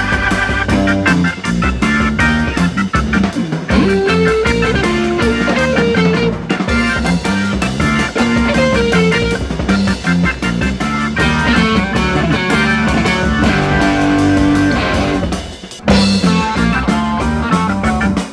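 A rock band playing live: electric guitar over bass guitar and drums. Near the end the music drops away for a moment, then comes back in at full level.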